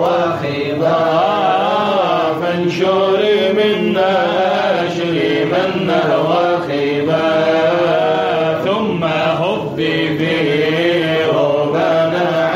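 A group of voices chanting a Sufi devotional poem in Arabic (inshad), with melodic lines sliding and turning over a steady low sung tone.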